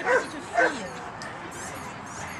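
A dog barking twice in quick succession, about half a second apart, near the start, over a background murmur of voices.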